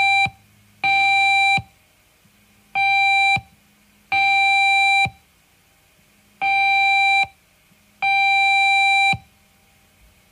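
An electronic beep tone, one steady pitch with overtones, sounding six times at an uneven pace. Each beep lasts from a fraction of a second to about a second, and each starts and stops abruptly.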